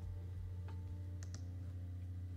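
Light clicks from computer controls during digital drawing: one about two-thirds of a second in, then two in quick succession. A steady low hum sits underneath.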